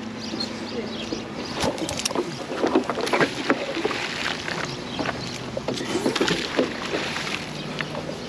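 A steady low motor hum with scattered short knocks and clatters, with faint indistinct voices in places.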